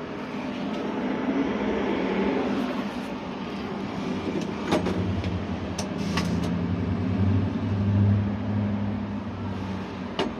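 Road traffic running steadily, with a heavy vehicle's engine drone building around the middle and easing off near the end. A few sharp clicks around the middle as the payphone's handset is lifted from its hook.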